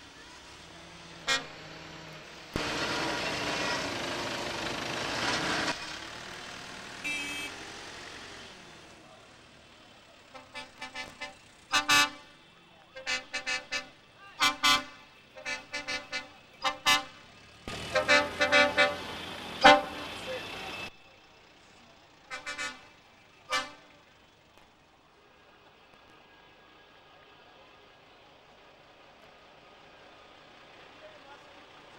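Vehicle horns of a slow procession of vans and lorries tooting in a long string of short blasts, over the running of their engines. A louder rush of vehicle noise passes a few seconds in.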